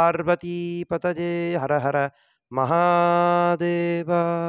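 A Hindu temple priest chanting a mantra on one steady pitch: short runs of syllables in the first half, then a brief pause and a long held note through the second half.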